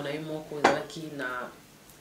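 A woman speaking, with one sharp clink a little over half a second in.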